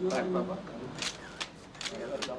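A voice held briefly at the start, then a few short scratchy rustles about a second in, each lasting only a moment.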